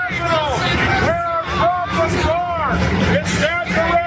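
Men shouting in an outdoor protest crowd, repeated raised calls over crowd babble, with the steady low running of a truck engine underneath.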